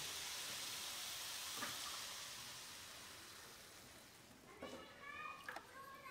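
Grated beetroot and carrot sizzling as they fry in ghee in a pan, a steady hiss that fades away over the first four seconds. Near the end, a few short, faint sounds as cold milk is poured into the hot pan.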